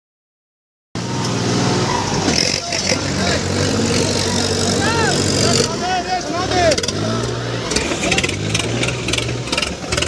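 Silence for about the first second, then tractor diesel engines running steadily, with people's voices over them.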